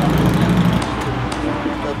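A car engine running with a steady low hum amid street noise and faint voices; the hum eases off about a second in.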